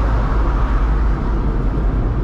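Car on the move, heard from inside the cabin: a steady low rumble of engine and road noise.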